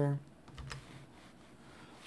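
A few faint computer clicks in a quiet room: keypresses or mouse clicks advancing a presentation slide.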